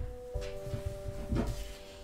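Soft background music holding a steady chord, with a couple of faint taps as playing cards are picked up off a cloth-covered table.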